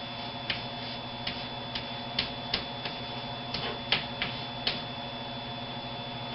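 Chalk writing on a blackboard: about a dozen sharp, irregular clicks as the chalk strikes the board through the letters, over a steady low electrical hum.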